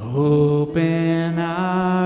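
Slow worship chorus sung in long, held notes over acoustic guitar, with a new note starting just under a second in.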